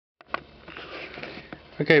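A click as the recording starts, then about a second of soft breathy noise from a man sniffing in through his nose, before he says "Okay" near the end.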